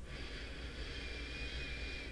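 A person's long, quiet breath through the nose: about two seconds of soft hiss with a faint whistle in it.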